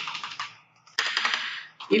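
Computer keyboard being typed on: a quick run of keystrokes starting with a sharp click about a second in.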